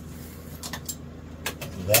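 A steady low hum with a few faint, short clicks, and a man's voice starting a word near the end.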